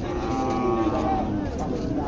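A cow mooing once, one call about a second long, with people's voices around it.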